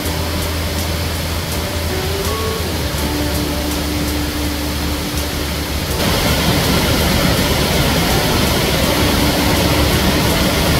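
Waterfall cascades rushing as a steady, loud wash of falling water, which gets brighter and louder about six seconds in.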